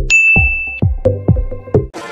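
Electronic intro music with drum-machine kick beats about three a second. A bright bell-like ding, a subscribe-button notification sound effect, starts near the beginning and rings steadily for under a second.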